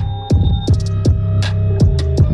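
Bass-boosted hip-hop instrumental played loud on a JBL Boombox 2 portable Bluetooth speaker: deep 808 bass notes that slide down in pitch several times, over hi-hat and snare clicks.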